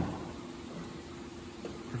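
Steady background hum and hiss of a workshop's room tone, with the tail of a spoken word at the very start.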